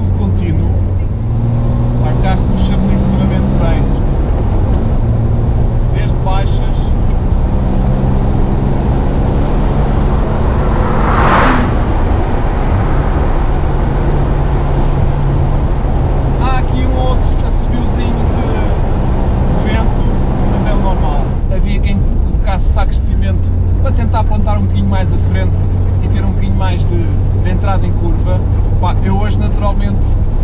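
Air-cooled flat-six engine of a 1970 Porsche 911T running under way, heard from inside the cabin, its pitch stepping up and down several times with the revs. A brief whoosh about eleven seconds in.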